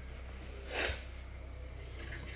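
A person's single short, breathy sniff about three-quarters of a second in, over a faint steady low hum.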